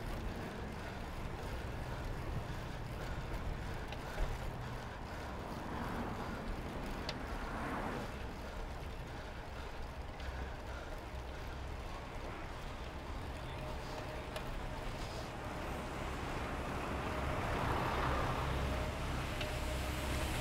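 City street traffic and wind noise heard from a moving bicycle, a steady rumble that swells as vehicles pass, once about six to eight seconds in and again near the end.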